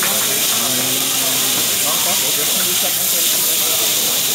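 Fried rice sizzling steadily on a hot teppanyaki griddle as it is turned with spatulas.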